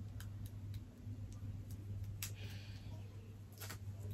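Faint, scattered light clicks, the clearest about two seconds in, and a brief soft rustle from hands working on hair braids, over a steady low hum.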